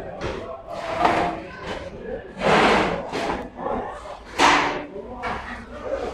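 Men's voices talking and calling out in a large, echoing room, with two louder noisy bursts, one about two and a half seconds in and one about four and a half seconds in.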